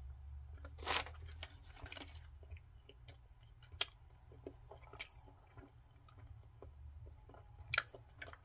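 A person chewing a bite of a dense, chewy protein bar topped with biscuit pieces: scattered soft chewing clicks and small crunches, the loudest about a second in.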